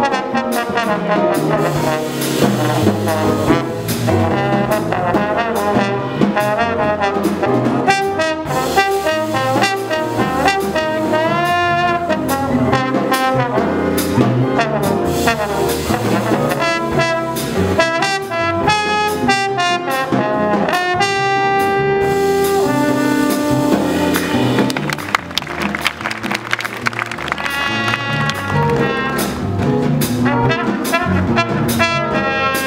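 Live jazz combo: a trombone solo over electric bass and drums, with slides in the melodic line. Near the end a trumpet takes over the lead.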